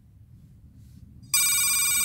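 A faint low rumble, then a loud, high, ringing electronic tone with many overtones that starts suddenly about a second and a half in and holds steady.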